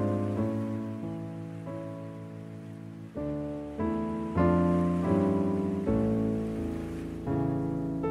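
Slow background Christmas piano music, with chords struck about once a second and left to ring out.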